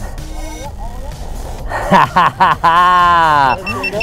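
Wind rushing on the microphone, then excited yelling with one long held whoop falling in pitch as the tandem skydivers touch down. A short high electronic beeping starts near the end.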